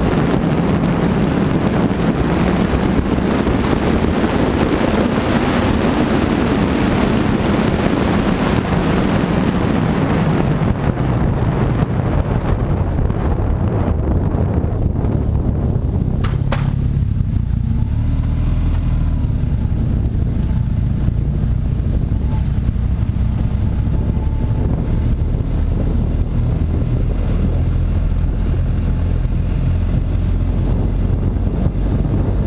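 Motorcycle riding on a road, heard from the bike itself: wind rushes over the microphone for about the first ten seconds. Then it dies away and the engine's low running note carries on, with one sharp click about sixteen seconds in.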